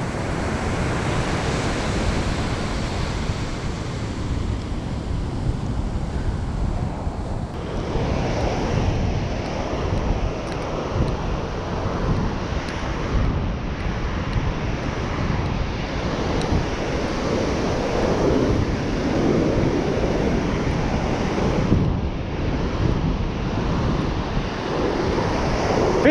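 Surf breaking steadily on a sandy beach, mixed with wind rumbling on the microphone.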